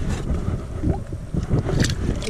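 Wind buffeting the microphone in a low, steady rumble, with a short splash near the end as a small black crappie is dropped back into the lake.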